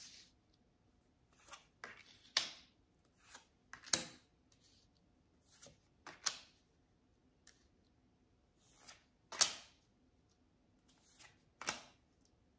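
Tarot cards being dealt and laid face down one by one on a wooden tabletop: about a dozen short, sharp card slaps and slides, a second or two apart, the loudest about four and nine and a half seconds in.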